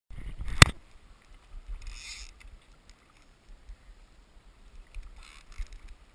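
River water sloshing and lapping close to the microphone, with a low rumble and a sharp knock about half a second in.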